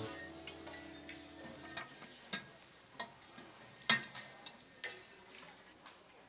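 The last chord of a live band fades out, then faint scattered clicks and knocks, about six of them spaced unevenly, the loudest about four seconds in, as musicians set down instruments and gear and step off the stage.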